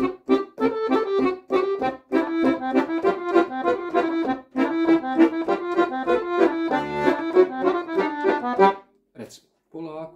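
Piano accordion played: a short melodic passage over chords, with a brief break about two seconds in, stopping about a second before the end.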